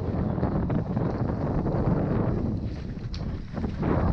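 Wind rumbling on a helmet camera's microphone during a fast mountain-bike descent, mixed with the knocks and rattles of the bike running over a rough dirt trail, with a few sharper knocks late on.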